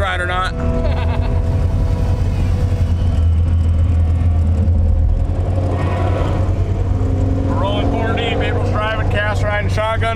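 V8-swapped Mazda RX2's Gen V LT V8 idling, a steady low rumble heard from inside the cabin.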